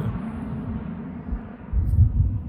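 Low-flying jet airliner passing overhead, a steady rumble of jet engine noise, with a brief louder low thump near the end.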